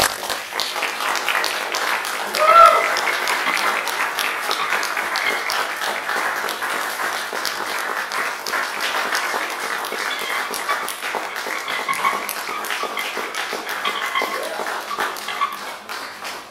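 Audience applauding: a dense patter of many hands clapping that starts suddenly, with a short whoop about two and a half seconds in, and tapers off near the end.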